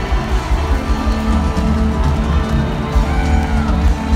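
Live rock band playing, electric guitars over bass and drums, recorded from inside the crowd with a heavy, booming low end.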